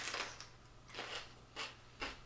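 Biting into and chewing a chocolate-dipped fresh jalapeño pepper: a few short, crisp crunches.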